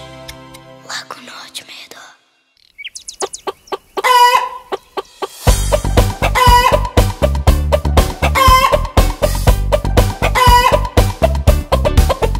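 The end of a soft lullaby fades away, followed by a short near-silent gap and a few light plucks. Then a cartoon chicken call sounds, and about five and a half seconds in an upbeat children's-song beat starts, with the chicken call repeating roughly every two seconds over it.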